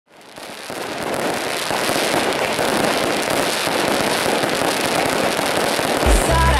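Fireworks crackling: a dense, continuous crackle of many small pops, fading in over the first second and then holding steady.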